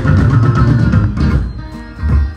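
Live maskandi band music: plucked guitar over bass guitar and drums, thinning out and getting quieter in the second half.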